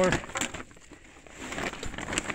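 The tail of a spoken word, then a few sharp clicks and faint crunching and rustling from footsteps and camera handling in dry leaf litter.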